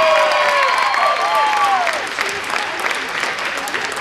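Audience applauding and cheering, with loud whooping shouts over the clapping in the first two seconds, then clapping alone.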